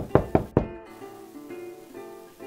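Knocking on a door: a quick run of about four knocks in the first half second, over plucked-string background music.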